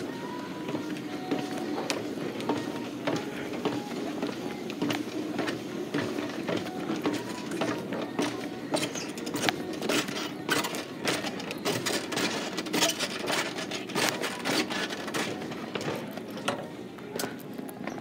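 Footsteps clicking on the metal steps of a switched-off Montgomery escalator as it is walked down like a stair, over steady store background music.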